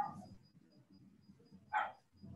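A dog barking faintly in the background, twice, about one and a half seconds apart.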